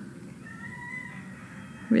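A faint, drawn-out animal call about a second long, starting about half a second in, as one thin, nearly level high tone.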